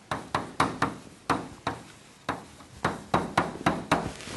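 Chalk striking and scraping on a blackboard while an equation is written: about a dozen sharp taps at an uneven pace, each dying away quickly.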